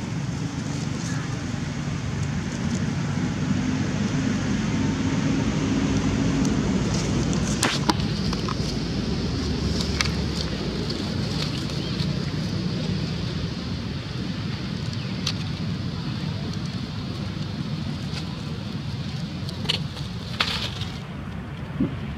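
Steady outdoor background noise, mostly a low rumble, with a few faint clicks.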